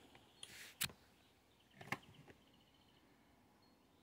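A few faint clicks and light taps as the red and black test leads are handled at the lead-acid battery's terminal: one sharper click just under a second in, then a small cluster of ticks about two seconds in, otherwise near silence.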